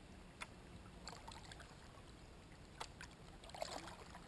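Faint water splashes and drips from kayak paddling, with gurgling bursts about a second in and near the end. Two sharp clicks fall about a second and a half apart, the first early on.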